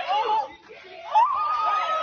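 Teenagers in a phone-recorded school fight video shouting and laughing: a short cry at the start, then a long high shout that rises and holds from about a second in.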